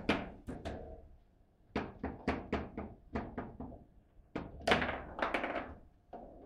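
Foosball table in play: a quick, irregular run of sharp knocks as the ball is struck and blocked by the plastic figures on the rods.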